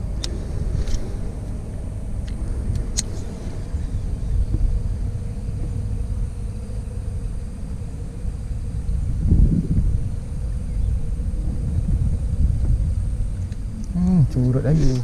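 Steady low wind rumble on the microphone, swelling about nine seconds in, with a few faint sharp clicks in the first three seconds.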